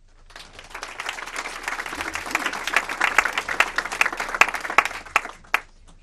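Audience applauding: the clapping builds over the first second, holds, then thins out to a few last claps near the end.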